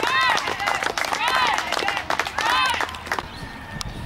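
Young players cheering together in three high-pitched, rising-and-falling shouts about a second apart, with clapping.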